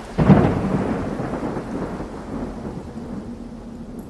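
Thunderclap sound effect: a sudden crack just after the start, then a rolling rumble that slowly fades.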